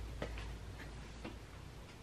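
A few faint, small clicks spread through a quiet stretch, over a low steady hum.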